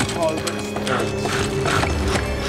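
Creaking and clicking of leather restraints and a wooden chair under strain, in short bursts about every half second, over a low steady drone.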